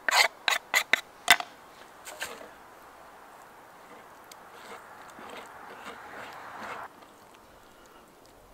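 A few sharp taps on the wooden chopping board, then hands rubbing chopped garlic and an oily spice marinade into a raw pork loin: a soft, wet rubbing that grows a little louder and stops about seven seconds in.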